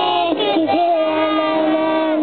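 A group of children singing together, settling into one long held note a little under a second in.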